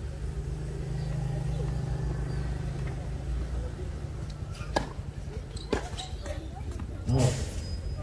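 A motor vehicle's engine runs low and steady through the first half, then fades. Two sharp knocks come about a second apart, and a short voice is heard near the end.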